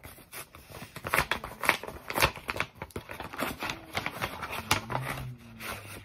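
Paper mailing envelope being torn open and handled by hand: a run of sharp paper tearing and crinkling strokes, busiest in the first half, then lighter rustling.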